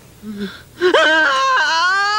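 A man's short gasp, then, just under a second in, a loud, long, high-pitched scream of pain from stepping barefoot on a nail, held on one pitch.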